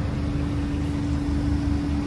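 Steady machine hum: one constant mid-pitched tone over a low rumble.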